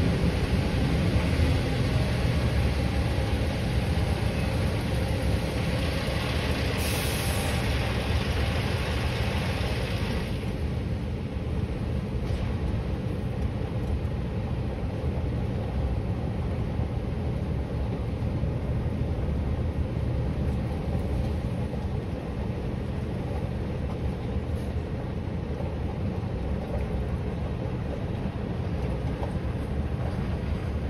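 Scania V8 truck engine running at low road speed, a steady low drone heard from the cab. A broader hiss rides over it for the first ten seconds or so, then dies away.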